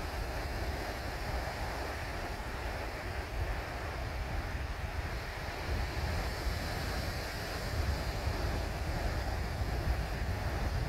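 Ocean surf washing onto a sandy beach, a steady rushing noise, with wind buffeting the microphone as a low rumble.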